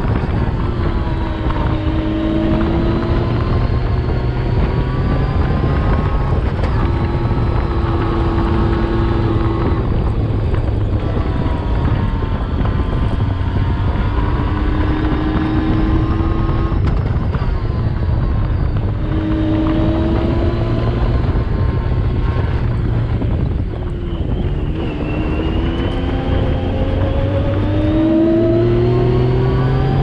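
Yamaha YXZ 1000R side-by-side's three-cylinder engine driving over sand dunes, its revs rising and falling back every few seconds under a constant low rush.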